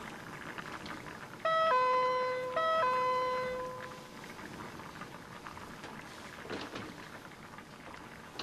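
Two-tone 'ding-dong' doorbell chime rung twice, about a second apart, the second chime ringing out and fading over about a second.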